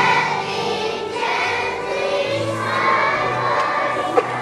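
A choir of first-grade children singing together, with musical accompaniment underneath.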